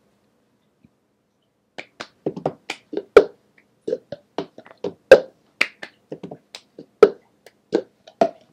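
Cup song rhythm played by hand with a plastic cup on a hard floor: claps, taps and cup knocks start about two seconds in and keep a steady pattern, with the loudest cup strike about every two seconds.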